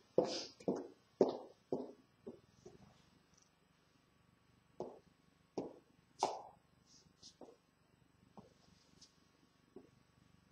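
Footsteps in heeled boots walking away, about two steps a second and growing fainter, followed by a few louder knocks around the middle.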